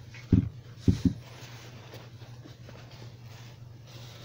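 Three low thumps in quick succession about a second in, with light rustling, as a car seat and its fabric cover are handled. A steady low hum runs underneath.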